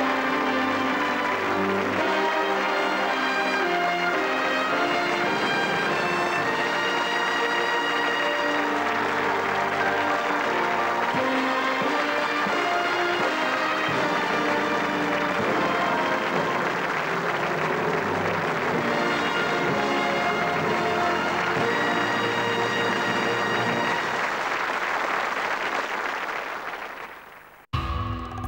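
A studio band plays the show's closing music, with the audience applauding over it.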